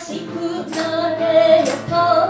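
A woman singing long held notes into a microphone, accompanied by a steel-string acoustic guitar.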